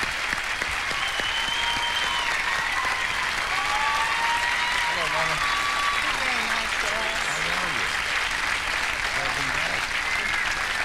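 Studio audience applauding steadily, with voices talking over the applause in the second half.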